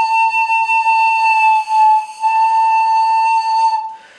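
Wooden pan flute playing two long, high held notes with a short break about halfway between them. The second note stops just before the end.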